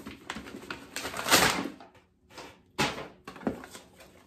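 Cardboard gift box and tissue paper being handled and opened, a series of rustles and scrapes, the longest and loudest about a second and a half in, with shorter ones after.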